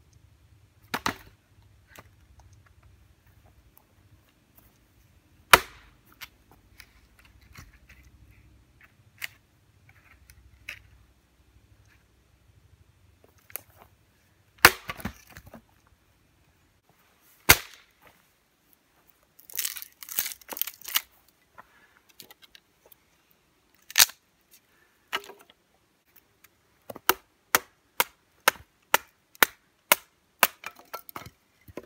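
Sharp wooden knocks and cracks, scattered single strokes at first and a crackling cluster about two-thirds of the way in, then a quick even run of about three strokes a second near the end: firewood being chopped, split or snapped by hand.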